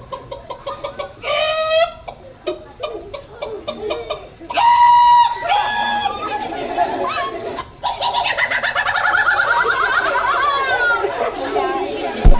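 Soundtrack of a video played back in a lecture hall: children and adults shouting, calling and laughing. Loud drawn-out calls come about a second and a half in and again near the middle, the second the loudest, and many voices call out together near the end.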